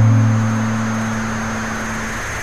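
A guitar chord in a noise-rock track ringing out and slowly fading, over a steady high-pitched whine and hiss.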